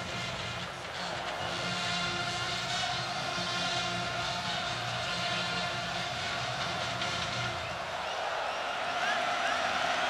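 Music playing in the stadium, with notes that change every half second or so, over a steady wash of crowd noise.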